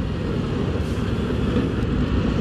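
2024 Harley-Davidson Road Glide's Milwaukee-Eight V-twin running steadily on the move, mixed with wind and road noise.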